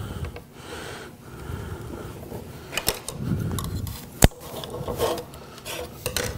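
3M VHB double-sided tape being pulled off its roll and rubbed down onto a sheet of aluminium, a continuous rubbing and scraping. A few small clicks come near the middle, and a single sharp click a little past four seconds in is the loudest sound.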